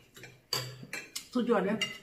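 Cutlery clinking and scraping against dinner plates, with several sharp clinks spread across the two seconds.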